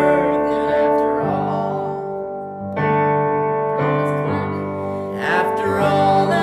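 Electric keyboard playing sustained piano-voiced chords while a man and a woman sing a gospel song together, the voices thinning briefly around the middle before coming back in.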